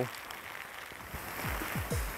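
Steady hiss of heavy typhoon rain and wind, with background music coming in about halfway through as a run of falling bass notes.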